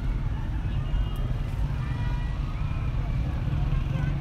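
Steady low rumble of wind buffeting a phone microphone, with faint voices of people talking at a distance.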